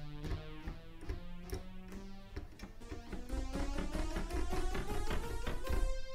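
Sampled Juno-106 synthesizer notes played back from a software sampler, the notes between the recorded samples filled in by repitching their neighbours. A few held notes come first, then a quick run of notes climbs up the keyboard to the top.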